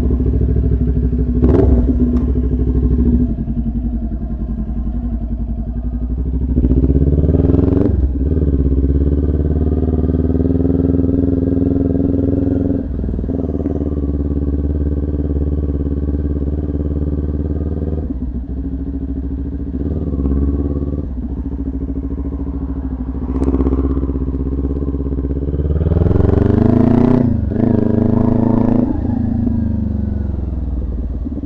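Kawasaki Ninja 400's parallel-twin engine running as the bike pulls away and rides at low speed. The revs climb and drop back a few times, most clearly about a third of the way in and again near the end.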